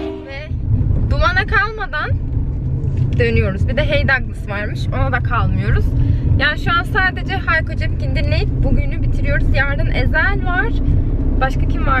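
A woman talking inside a moving car, over the steady low rumble of the engine and road heard in the cabin.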